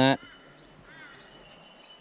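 Quiet outdoor background with a faint, short bird chirp about a second in, over a faint steady high tone. A man's voice finishes a word at the very start.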